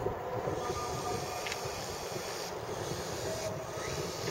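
Distant steady whine of a model boat's small electric motors running at speed, under gusty wind buffeting the microphone.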